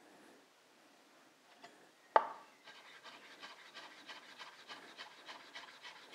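A chef's knife slicing soaked kombu on a plastic cutting board: a single sharp knock about two seconds in, then a quick even run of faint cutting strokes, about five a second, as the kelp is cut into thin slices.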